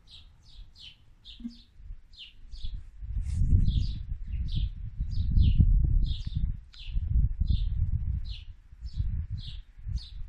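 A small bird repeating a short, falling chirp about twice a second. From about three seconds in, a low rumble of wind on the microphone comes in and is the loudest sound.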